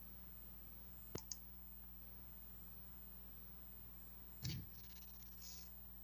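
Two quick mouse clicks about a second in, and a short soft knock at about four and a half seconds, over a faint steady electrical hum on a quiet call line.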